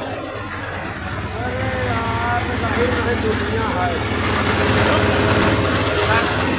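Rice milling machine (paddy huller) running with a steady low drone as milled rice pours from its outlet chute.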